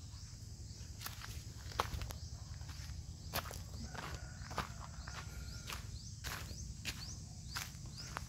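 Footsteps on dry dirt ground, irregular steps coming about one or two a second over a steady low rumble, with short high chirps repeating throughout.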